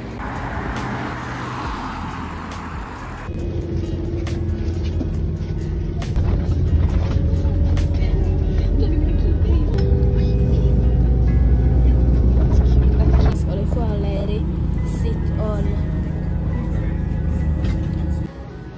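Steady low rumble of a moving public-transport vehicle heard from inside, growing louder partway through, with background music playing over it. The first few seconds before it are a hissier street-side noise.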